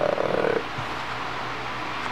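A man's drawn-out hesitation sound, 'uh', ending about half a second in, then quiet room tone with a faint low steady hum.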